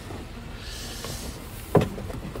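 A soft rubbing hiss in the middle and a single sharp knock near the end, over a low steady rumble: a phone brushing and bumping against a Jeep Wrangler's door frame and seal.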